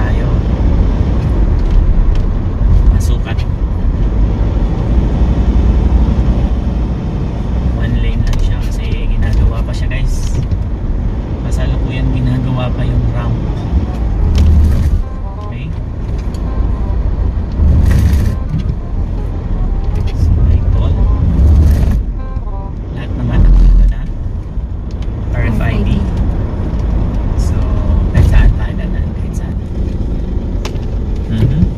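Steady low road and engine rumble inside a moving car's cabin on the expressway, with a few louder thumps in the second half.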